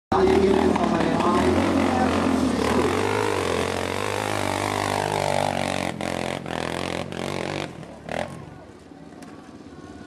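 Off-road motorcycle engines revving hard, with people's voices mixed in; the engine noise drops away about eight seconds in.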